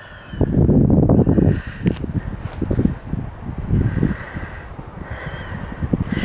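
Irregular low rumbling and buffeting on a handheld camera's microphone, wind and handling noise as the camera is carried over a rocky shingle beach, with a few knocks.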